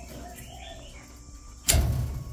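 A single sudden loud thump about one and three-quarter seconds in, over faint background sounds.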